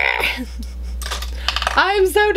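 Light clinks and clicks of small hard objects being handled, over a steady low electrical hum; a woman's voice starts near the end.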